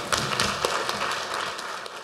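Audience applauding, a dense patter of many hands clapping that dips slightly near the end.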